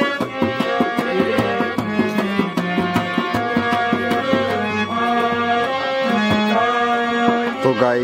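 Tabla and harmonium playing an instrumental tune: quick drum strokes under held reed notes that step from one pitch to the next.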